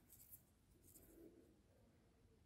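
Near silence, with a few faint soft scratches and rustles of fine thread being worked with a thin steel crochet hook, about twice in the first second and a half.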